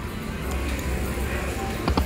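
Casino floor background of machine music and chatter while a Huff n' Puff slot machine's reels spin, with a few sharp clicks near the end.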